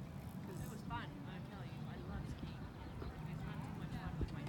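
Indistinct voices of people talking, over a steady low rumble.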